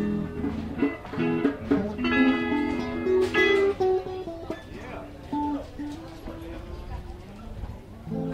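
Electric and acoustic guitars playing a live blues shuffle jam in E. The playing is loudest in the first half, with chords ringing out about three to four seconds in, then drops to quieter, scattered notes.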